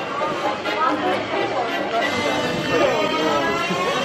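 Indistinct voices of people talking, with background music playing.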